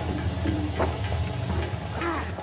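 A steady hiss over a low, even hum, with no clear music or voice.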